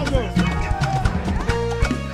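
Live band playing amapiano-style gospel praise music: a drum kit keeping a steady beat under keyboard and bass, with a voice singing over it.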